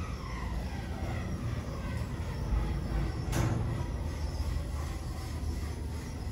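OTIS GeN2 gearless traction lift travelling upward: a steady low rumble of the car in motion, with a whine falling in pitch over the first second and a single sharp click a little past halfway.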